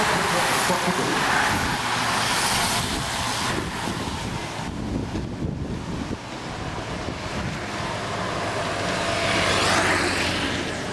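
Wind and outdoor noise on the microphone as a pack of road cyclists rides past. The noise dips about five seconds in and swells again near the end.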